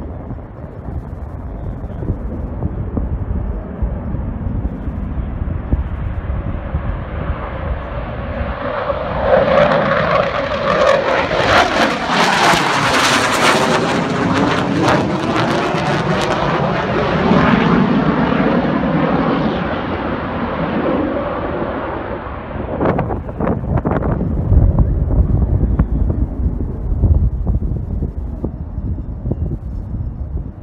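A low-passing fighter jet: its engine noise swells as it approaches, is loudest about halfway through with a sweeping, whooshing change in tone as it goes overhead, then fades away as it flies off.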